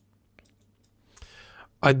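A few faint, sharp computer mouse clicks, then a soft intake of breath just before a man starts speaking near the end.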